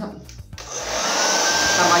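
Handheld hair dryer switched on about half a second in: a sudden rush of air, with a motor whine that rises in pitch as it spins up and then holds steady while it blows.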